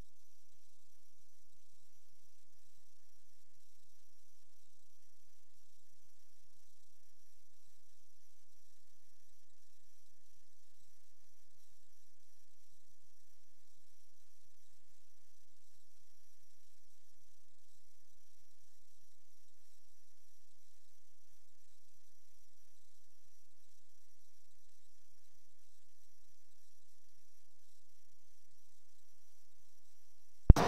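Steady electrical hum and hiss with a faint constant high whine, unchanging throughout: the noise floor of the sewer inspection camera's recording, with no other sound.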